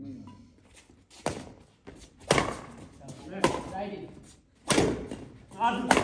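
Badminton rally: five sharp racket strikes on the shuttlecock, about a second apart, the last one the loudest of the run.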